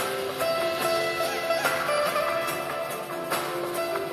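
Electric veena being finger-plucked, playing a melody in which the notes slide up and down into one another.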